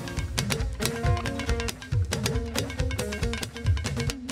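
Hourglass talking drum struck with a curved stick in a quick rhythm, its pitch bending up and down between strokes as the player squeezes the tension cords, over live band music.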